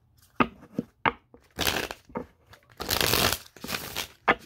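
Deck of tarot cards being shuffled by hand: a few light taps, then two quick stretches of shuffling, the second lasting about a second.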